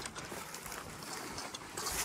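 Footsteps through dry low brush and undergrowth, with twigs and stems swishing and crackling against the walker's legs; a louder swish near the end.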